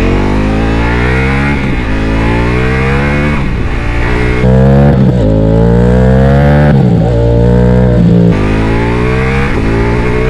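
Ducati Multistrada V4S's 1158 cc V4 engine breathing through a full Akrapovic exhaust system, accelerating hard through the gears: the revs climb in several pulls, each cut short by a gear change.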